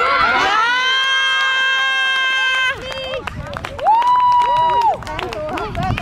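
A high-pitched voice yelling a long, held cheer of 'Ja!' for nearly three seconds, celebrating a goal just scored. About four seconds in a second, shorter high yell follows, with chatter around it.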